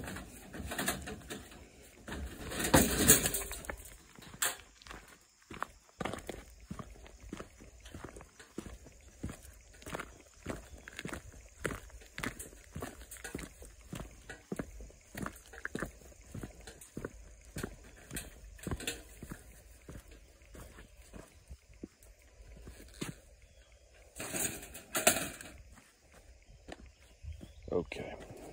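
Steady footsteps on dirt as a wire live trap holding a raccoon is carried, with a louder rustling clatter a few seconds in and another shortly before the end as the trap is handled and set down.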